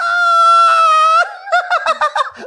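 A man's high-pitched falsetto squeal, held for about a second and falling slightly at the end, then breaking into short bursts of giggling laughter.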